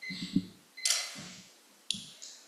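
Handling noise at a lectern microphone: a few low knocks, a brief rustle about a second in, and a sharp click near the end.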